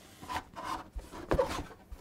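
Cardboard box handled and turned in the hands, the cardboard rubbing and scraping, with a couple of light knocks about halfway through.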